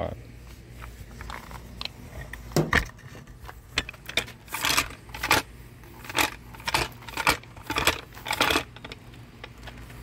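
Scattered light clicks, knocks and jingling of small metal and plastic parts, with a few brief scrapes, as a roof-rack crossbar's fittings are handled and loosened.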